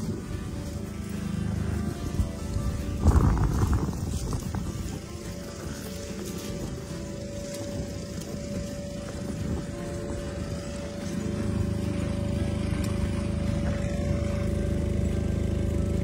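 Background music with a held tone, over a low steady rumble, with a brief louder rumble about three seconds in.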